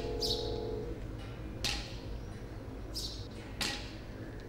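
Sharp taps about every two seconds, which fit ceremonial staffs struck on stone steps, with high bird chirps in between. A held ringing tone fades out in the first second.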